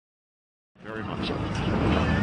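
Dead silence for the first part, then outdoor background noise fades in about three-quarters of a second in: a steady rumbling hiss that grows louder toward the end.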